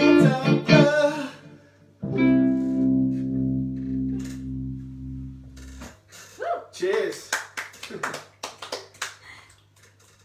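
The song ends: keyboard and singing for the first second or so, then a held final chord on the keyboard that fades slowly and cuts off abruptly about six seconds in. After it come scattered knocks and clicks and a few brief vocal sounds as the player moves about.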